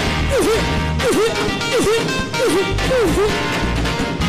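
Live gospel worship music: a woman's voice sings about six short swooping wordless syllables in a row over band backing, with sharp percussion hits throughout.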